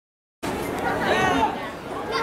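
A brief dead-silent dropout, then spectators' voices chattering on the sideline over the general hubbub of the crowd.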